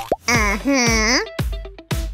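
A cartoon character's wordless voice sounds, sliding up and down in pitch, over children's background music. A short plop comes at the start and two short clicks near the end.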